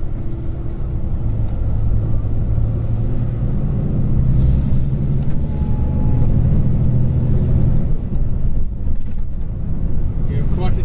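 Volvo FH16 750's 16-litre straight-six diesel heard from inside the cab, pulling under load with a deep drone that builds about two seconds in. The drone dips briefly near the end.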